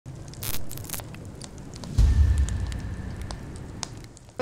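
Logo-intro sound effect: scattered crackles like sparks, then a sudden deep boom about two seconds in that dies away as a low rumble.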